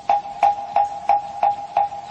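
Moktak (Korean Buddhist wooden fish) struck at a steady pace, about three strikes a second, each hollow knock ringing briefly at one pitch, keeping time between lines of chanted sutra recitation.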